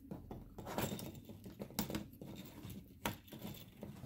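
Hands handling LEGO Technic plastic parts at the sorter's bottom compartment: irregular plastic clicks, knocks and scrapes as the pieces and connectors are worked loose.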